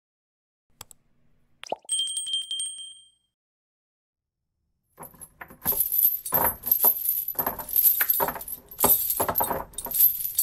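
Two clicks and a bright bell ding of a subscribe-button sound effect, the ding ringing for about a second. After a short silence, from about five seconds in, metal chains or shackles rattle and clink continuously.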